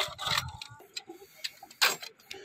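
Metallic clicks and clacks of an ammunition belt being laid into a tripod-mounted heavy machine gun's feed tray, ending in a louder clack as the top cover is pressed shut.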